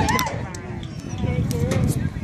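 Spectators and players calling out across a soccer field, their voices short and distant, over a low uneven rumble.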